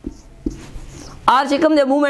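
Marker pen scratching across a whiteboard as a short note is written, then a man's voice comes in, drawn out, a little over halfway through.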